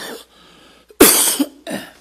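A person coughing: three hard coughs, the loudest about a second in.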